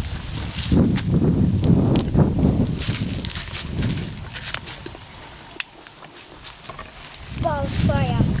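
Steady high-pitched chirping of grasshoppers, under irregular rustling and footsteps of a child moving through long grass. A child's voice comes in briefly near the end.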